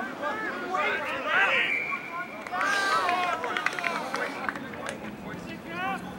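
Rugby players shouting short calls to one another around a ruck, several voices overlapping.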